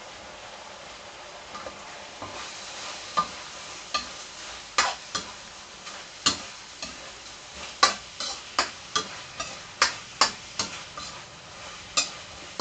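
Metal spatula scraping and clanking against a steel wok during a stir-fry, over a steady sizzle of pork belly and vegetables frying in sauce. The sizzle is heard alone at first; sharp irregular scrapes begin about two seconds in and come more often toward the end.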